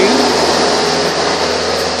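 Steady whooshing machine noise with a low hum underneath.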